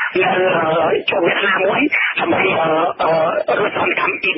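Speech only: a man talking steadily in Khmer.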